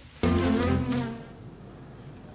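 A steady, buzzing drone that fades out after about a second.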